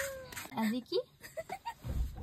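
A thin, high-pitched voice sound falling slightly in pitch, then a few short, squeaky vocal sounds.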